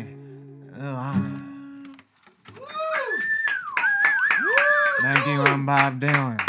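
A song with acoustic guitar and voices ends on held notes, followed by a brief silence about two seconds in. Then come clapping, whoops and a whistle, with voices joining again near the end.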